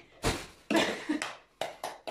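Hands slapping an inflated plastic garbage bag with a single thump, launching a plastic toy fruit off it, followed by bag rustling and a couple of light taps as the toy lands.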